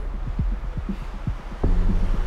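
Low background music of the drama's score: a sustained bass drone with soft, irregular low thuds like a heartbeat, swelling louder about a second and a half in.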